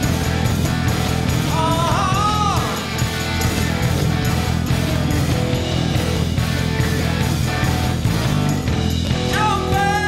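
Live rock band playing: electric bass, electric guitar and drum kit, with singing a couple of seconds in and again near the end.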